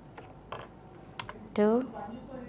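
A few separate computer keyboard key clicks at irregular spacing, a pair of them close together just past the middle.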